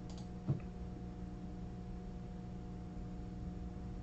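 Quiet room tone with a steady electrical hum, broken by a single short click about half a second in.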